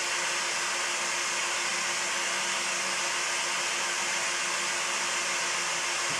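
Steady hiss with a faint low hum. It is the same background noise that runs under the speech on either side, with no change or event in it.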